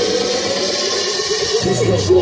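A DJ's electronic dance music over the festival PA, in a breakdown: a held, wavering voice-like line in the mix with the bass cut out. The bass drops back in about one and a half seconds in.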